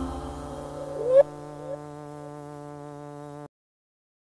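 Closing synthesizer note: a held, buzzy tone with a quick upward pitch sweep about a second in and small blips after it. It cuts off suddenly about three and a half seconds in.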